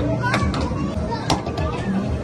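Children's voices and chatter over arcade background noise, with two sharp knocks about a second apart, the second louder, from a puck being struck on a tabletop hockey arcade game.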